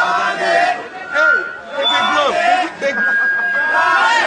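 Speech: high-pitched voices talking and chattering.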